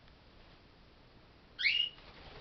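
Cockatiel giving one short, loud whistled call in flight, about a second and a half in, after a quiet stretch.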